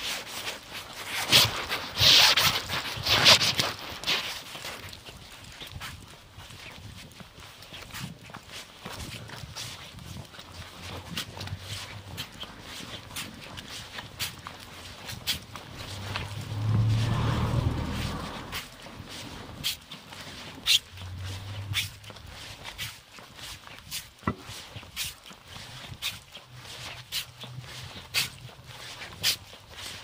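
Footsteps on a pavement with the rub and knock of a hand-held phone, as the phone is carried while walking. A louder rustling burst comes near the start, and a low rumble swells and fades just past halfway.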